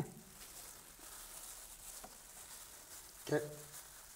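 Faint rustling and crinkling of plastic-gloved hands folding a vine leaf around its filling, with a short spoken word near the end.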